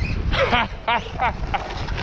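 A man laughing in a few short bursts, each falling in pitch.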